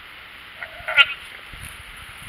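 A goat gives one short, wavering bleat about a second in, hollering for its supper.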